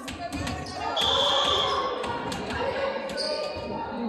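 Indoor volleyball being played on a hardwood gym court: sharp hits of the ball and short high shoe squeaks on the floor, one about a second in and another near the end, all echoing in the large hall.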